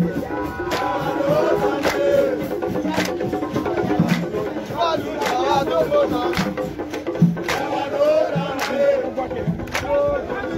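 Traditional drums beating at roughly one stroke a second, with crowd voices singing and shouting over them.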